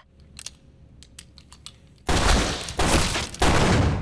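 A volley of gunfire from several guns firing at once, a dense barrage that starts suddenly about two seconds in and comes in three surges before dying away. A few faint clicks come before it.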